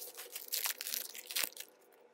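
Wrapper of a Topps Big League baseball card pack crinkling and tearing as it is pulled open: a quick run of crackles that dies away about a second and a half in.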